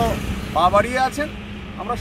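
A man speaking in short bursts over a steady low rumble.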